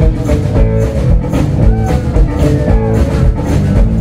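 Live rock band playing amplified electric and acoustic guitars over a drum kit with a steady beat.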